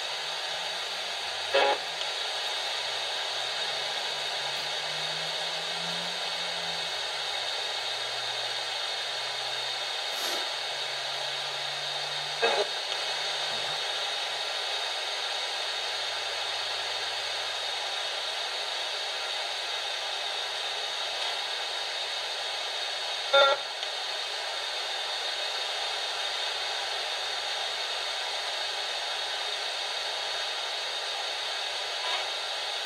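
Steady hiss of radio static from a spirit box sweeping stations, with faint broken fragments of sound low under it and three short sharp blips about 11 seconds apart.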